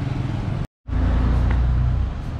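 Road traffic with a motorbike passing close by: a steady low rumble. It is broken by a brief gap of dead silence less than a second in.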